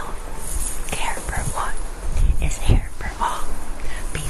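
A person whispering, breathy and without clear words, with a few soft low thumps.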